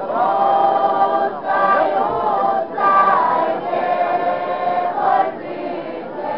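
A folk choir of several voices singing together without instruments, in short phrases of long held notes with brief breaks between them.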